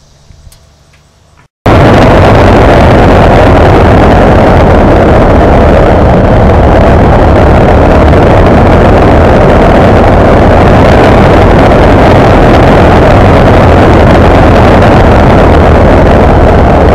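Loud, steady wind rush on the microphone of a camera on a moving Kawasaki Ninja 650R motorcycle, with the bike's running mixed beneath it. It cuts in suddenly about a second and a half in, after a few seconds of faint quiet.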